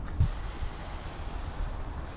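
Steady low rumbling outdoor street noise, with a single short thump about a quarter second in.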